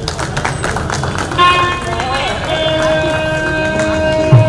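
Clapping in the first second or so, then music comes in about a second and a half in, settling on a long held note.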